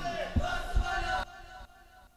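Several men shouting together in a yell that fades and cuts off about a second and a half in.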